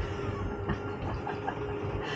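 Travel trailer's electric slide-out motor running with a steady hum as the slide room extends, with a few light knocks from the mechanism.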